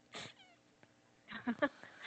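Short bursts of laughter and high-pitched vocal noises over a video call, a breathy burst just after the start and several brief voiced ones from about a second and a half in.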